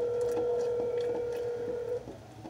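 Telephone ringback tone over a phone's speaker: one steady tone, held for about two seconds, starting and cutting off suddenly, the sign that the line is ringing and the call has not yet been answered.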